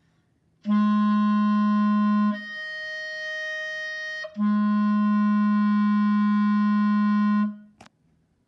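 Clarinet playing a register-key slur: the low B-flat below the staff held for about a second and a half, then the register key added to jump a twelfth up to fifth-line F, softer and held about two seconds, then the key released to drop back to the low B-flat, held about three seconds.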